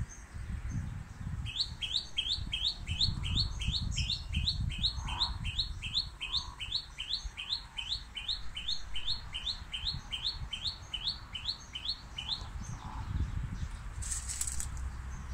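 A bird singing one long, even run of short rising notes, about two and a half a second, starting a second or so in and stopping near the end, over a low rumble.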